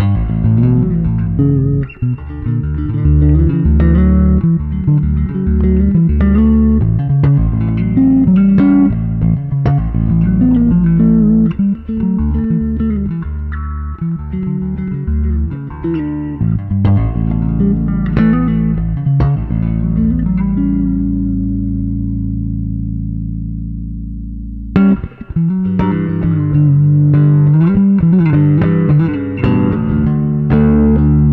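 Jaguar-style electric bass guitar played fingerstyle, a run of plucked notes. About twenty seconds in, one low note is held and rings out for about four seconds before the playing picks up again.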